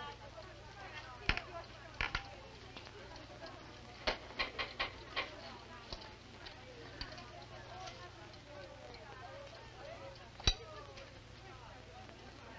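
A few scattered clicks and knocks from light footsteps and a small wind-up alarm clock being picked up and handled, with a short quick run of clicks about four seconds in and one louder click near the end. All of it sits over the faint steady hum of an old film soundtrack.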